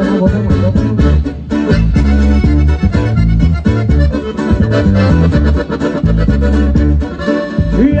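Norteño band playing an instrumental break: the accordion carries the melody over acoustic guitar and electric bass on a steady beat.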